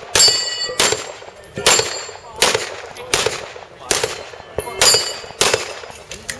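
A string of pistol shots, about eight, spaced roughly 0.7 s apart, fired at steel plate targets. Some shots are followed by the high ringing clang of a steel plate being hit.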